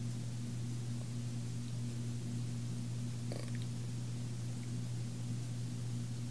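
A steady low hum with no rise or fall, and one faint click about three seconds in.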